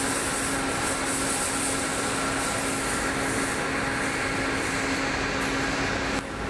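Intercity coach moving slowly at close range, its engine and air conditioning running as a steady noise with a constant hum throughout.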